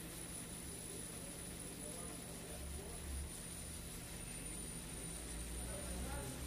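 Hot-air rework station blowing, set to airflow 30, to heat and desolder a USB-C charging connector: a steady airy hiss with a faint, thin high-pitched whine over a low hum.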